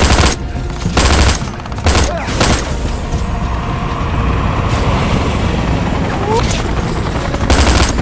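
Rifle gunfire in short bursts, several in the first two and a half seconds and another near the end, with a steady rushing battle noise between them.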